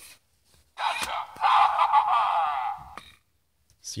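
Animated skeleton-hand candy bowl triggered, its small speaker playing a recorded phrase for about two seconds with a thin, tinny sound and no bass, with a sharp click or two from the mechanism.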